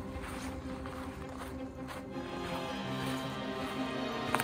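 Background music with slow, held notes that change every second or so.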